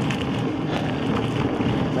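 Steady wind noise on the microphone, with the tyre of an Inmotion V14 electric unicycle rolling over a dirt trail strewn with fallen leaves.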